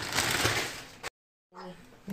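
Rustling handling noise from groceries being moved, fading out about a second in, then a brief dead silence where the recording is cut.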